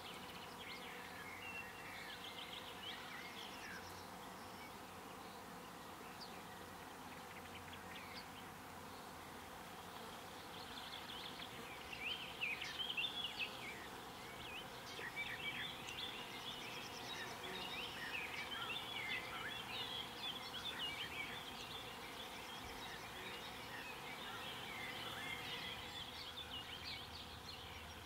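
Faint field ambience: a steady background of insects, with many small birds chirping in short calls. The calls are sparse at first and become busier and a little louder from about halfway through.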